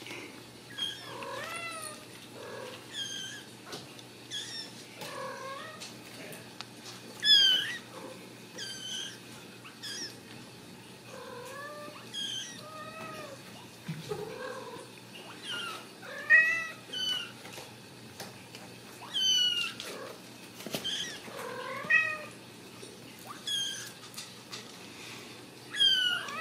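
Ragdoll kittens meowing over and over: short, high mews, roughly one a second, a few of them louder than the rest.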